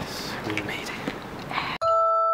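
Handheld-camera background noise with faint voices, cut off abruptly near the end by music-box notes ringing out: the start of a music-box background track.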